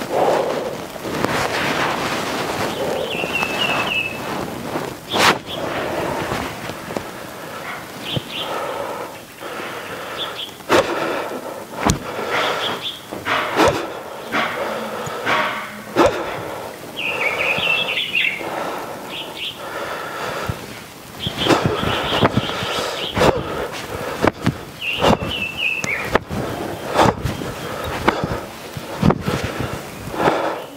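Small birds chirping in a few short bursts, over rustling and a run of sharp knocks and taps that grow more frequent near the end.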